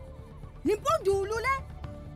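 A woman shouting an accusing line with wide swings in pitch, over a steady low background music drone.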